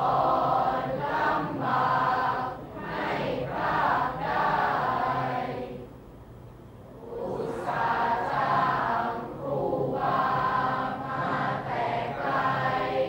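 A group of voices chanting lines of Thai verse together in a melodic recitation style. The chanting breaks off about six seconds in and resumes about a second later.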